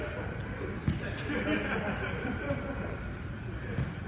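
Players' voices calling out during a futsal game, with a sharp thud of the ball being kicked about a second in and a lighter one near the end.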